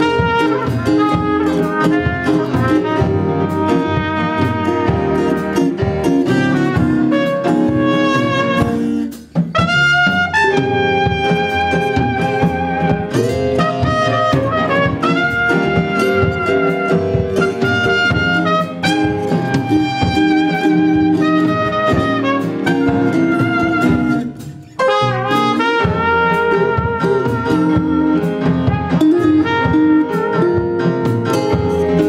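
Live small jazz band: a trumpet plays the lead line over piano, drum kit, guitar and upright bass, with two brief near-pauses in the music partway through.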